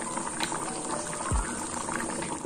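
A pot of thick yellow stew bubbling at a full boil, under background music. A short falling tone sweeps down about two-thirds of the way through.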